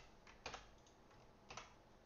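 A few sharp computer-keyboard key clicks, two of them about a second apart, against near silence.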